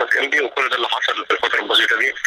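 Speech only: a man talking in Egyptian Arabic.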